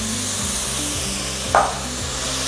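Chopped onion, leek and greens sizzling in oil in a pot, just deglazed with white wine that is bubbling off, a steady hiss. A brief sharp sound about one and a half seconds in.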